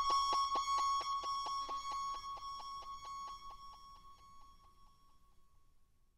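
End of a rock song: a single high note pulses rapidly, about six times a second, and fades away to silence over about five seconds.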